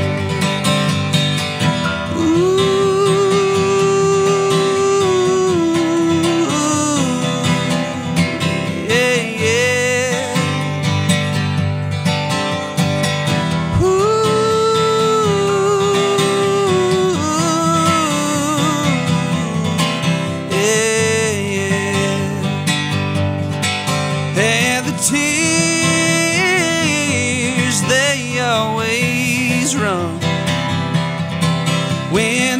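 A man singing a country song with long held notes over a strummed acoustic guitar, played live.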